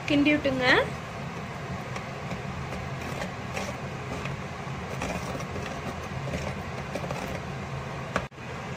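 A steady low mechanical hum, like a kitchen appliance's motor, runs under the faint scraping of a metal spoon stirring thick curry in a clay pot.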